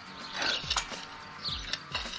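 Scraping and clicking from a metal hand trowel worked around the inside of a terracotta pot, loosening the soil and roots of a beetroot seedling that is stuck in the pot. Soft background music plays underneath.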